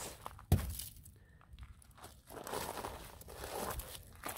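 A snowball thuds once against a car's front end about half a second in. A second or two of snow crunching follows near the end.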